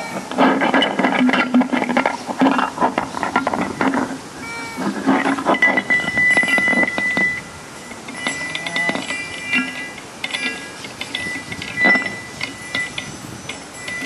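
Fender Telecaster electric guitar through a small Fender tube amp, played as free improvisation: a dense run of scraped and plucked, clattering notes, thinning out about halfway, when a high, thin tone holds until near the end.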